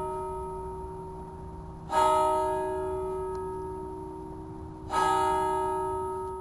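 A church bell tolling slowly, struck twice, about three seconds apart, each stroke ringing on and fading, with the previous stroke still dying away at the start.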